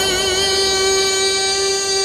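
Devotional folk music accompaniment: a reed instrument holds one long, steady note through the pause in the singing.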